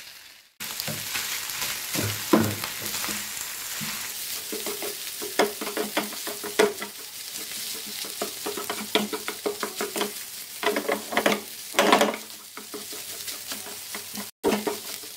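Fried rice sizzling in a frying pan while a wooden spatula stirs it: a steady hiss of frying under repeated scraping and tossing strokes, the loudest ones near the end. The sound drops out briefly just after the start.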